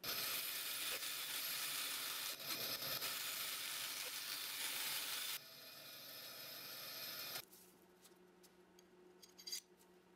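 Small bench power saw with a thin blade cutting through a small handle spacer piece: a loud, steady cutting noise for about five seconds. It then runs free, quieter, and cuts off suddenly about seven seconds in. A few light clicks follow near the end.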